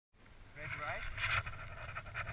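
A person's voice: a short call that wavers up and down in pitch about half a second in, then a louder burst of noise just past a second, over a steady low rumble.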